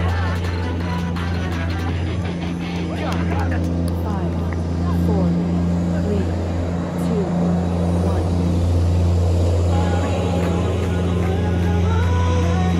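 Several people talking and calling out over a steady, unchanging low hum.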